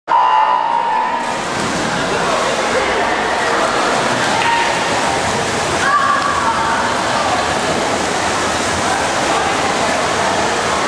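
A start signal tone sounds for about a second, then the swimmers splash through a freestyle race while spectators shout and cheer, all echoing in a large indoor pool hall.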